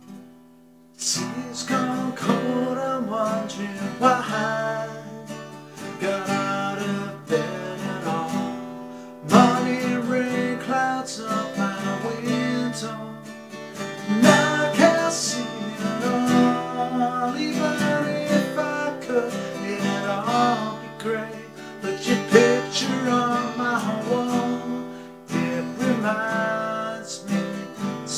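Acoustic guitar strummed and picked, with chords ringing on, starting about a second in.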